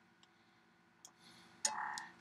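Quiet room tone with two faint clicks, one a moment in and one about a second in, from a computer mouse, then a short intake of breath near the end.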